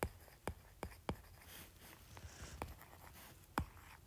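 Faint handwriting with a stylus on a tablet's glass screen: about half a dozen sharp, irregular taps of the tip on the glass, with light scratching between them as letters are written.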